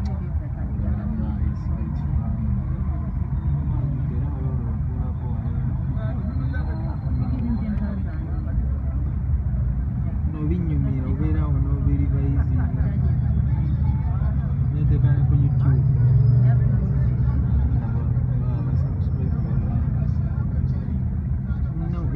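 Low, steady rumble of idling and creeping traffic heard from inside a vehicle, with indistinct voices talking over it throughout.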